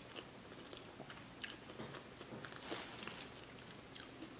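A person chewing a mouthful of shrimp, faint and wet, with a few small crunches.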